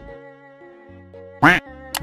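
A single short duck quack sound effect about one and a half seconds in, over soft background music with held notes.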